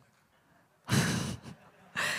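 A woman's short breathy exhale into a handheld microphone about a second in, followed by a fainter second puff.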